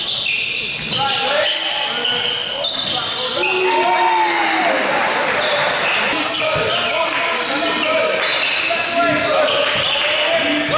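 A basketball being dribbled on a hardwood gym floor amid many short sneaker squeaks and players' wordless calls and shouts, all echoing in the gym.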